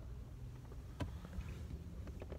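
Quiet low rumble inside a car cabin, with one sharp click about a second in.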